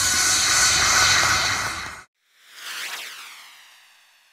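A loud hiss of noise as the pop track's beat drops out, cut off abruptly about two seconds in. After a short silence a swishing whoosh transition effect swells and then fades away.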